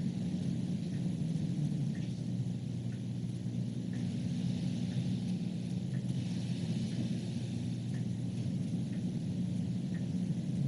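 Meeting-room tone: a steady low hum, with faint ticks about once a second.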